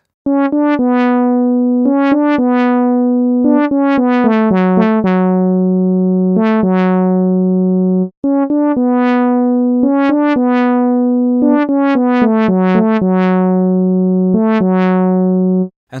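Saw-wave synth lead from the Vital software synthesizer playing a short single-note melody, twice over with a brief break about eight seconds in. Each note has a "wow" filter sweep, the tone brightening then closing, from envelope 2 with a raised attack driving the filter cutoff.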